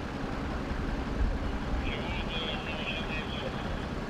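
Outdoor street ambience: a steady low rumble of vehicle engines with distant voices, and a faint high warbling sound for about a second midway.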